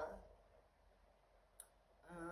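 Near silence: room tone, with one short faint click about three-quarters of the way through.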